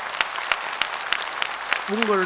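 Audience applauding: many hands clapping at once, dense and irregular.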